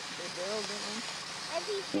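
Voices talking indistinctly over a steady hiss.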